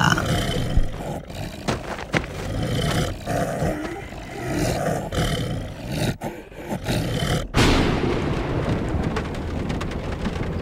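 Sound-effect monster growling and roaring, the ghoul-like flesh-eater of a horror audio drama. After about seven and a half seconds it cuts suddenly to a steady rain-like hiss.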